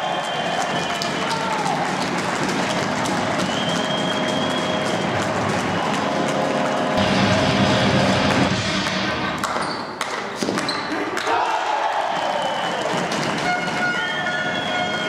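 Sports-hall sound of a floorball match: players and spectators shouting, sharp clacks of sticks and ball, and a louder swell of cheering about halfway through.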